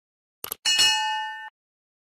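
Subscribe-button sound effect: two quick mouse clicks, then a bell ding of several ringing tones that cuts off suddenly after under a second.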